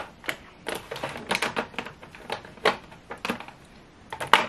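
Plastic lip gloss and lip balm tubes clicking and clattering against one another and against a clear acrylic organizer as they are handled and set in place: an irregular run of sharp taps, several a second.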